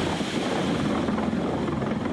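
Water pouring from the raised control gate onto a mill water wheel, a steady rushing noise with a low rumble, as the wheel's buckets fill and it begins to turn.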